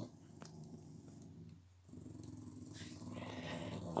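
A small dog growling low, faint at first and building over the second half: dogs squabbling.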